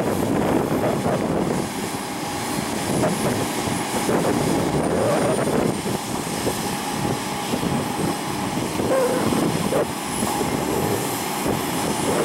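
Diesel engines of heavy demolition machines, wheeled material handlers and a tracked excavator, running steadily as one continuous drone, with no distinct impacts.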